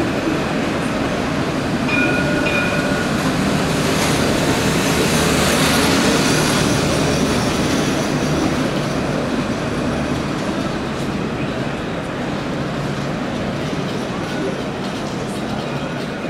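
Electric low-floor street trams rolling past close by on street track. The running noise swells to its loudest in the middle as two trams pass, and a brief high squeal sounds about two seconds in.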